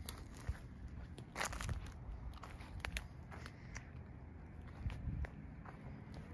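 Footsteps crunching and rustling through dry grass and plant litter, with irregular crackles and snaps.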